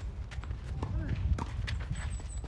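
Quick footsteps tapping and scuffing on a clay tennis court, with sharp knocks of a tennis ball struck by rackets during a rally, over a steady low rumble.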